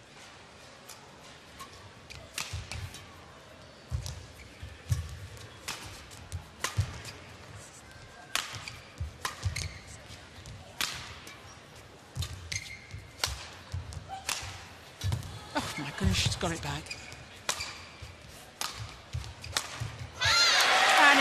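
A long badminton rally in a women's singles match: sharp racket strikes on the shuttlecock about once a second, with low thuds of the players' footwork on the court.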